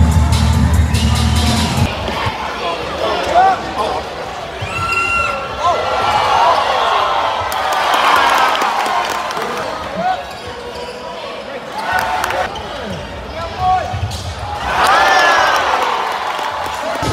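A basketball bouncing on a hardwood arena court during live play, with crowd voices around it. Loud arena music with a heavy bass plays at the start and cuts out about two seconds in.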